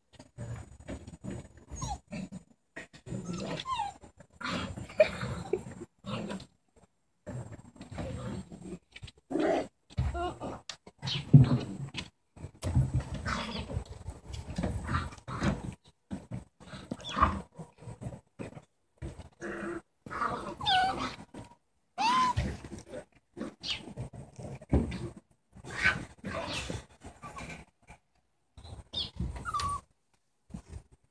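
Dalmatian puppies about six weeks old, growling with short high yips in irregular bursts through the whole stretch.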